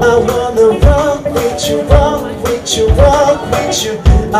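A voice singing a pop song over a band accompaniment with a regular drum beat.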